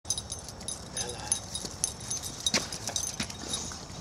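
Boxer dogs' paws and a person's footsteps on dry grass and leaves: irregular rustling and crunching footfalls with many small sharp clicks.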